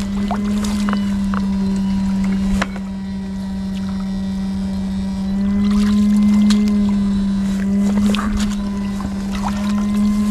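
Steady electric buzz of an electrofishing inverter (fish shocker) powering electrode poles in ditch water, with scattered sharp clicks.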